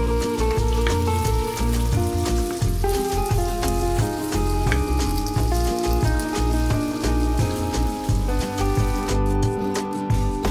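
Diced potatoes sizzling in hot oil in a frying pan, a steady fizz that stops about nine seconds in, under background music.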